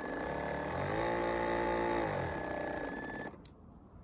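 A 12-volt chemical backpack sprayer pump is run through its speed controller. Its motor hum rises in pitch as it is turned up, holds steady, then falls as it is turned down, with a steady high whine alongside. It cuts off a little before the end.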